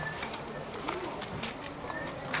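Faint bird calls over quiet outdoor background, with a soft low cooing call about a second in and brief high chirps.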